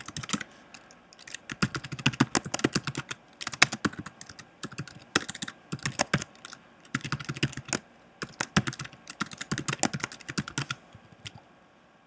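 Typing on a computer keyboard: runs of rapid keystrokes in several bursts with short pauses between, stopping about a second before the end.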